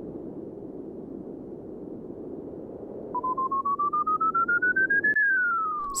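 Low steady rumble, then about three seconds in a rapid electronic beeping that climbs in pitch for two seconds. Near the end the rumble cuts off and the beeping turns into one smooth tone gliding down.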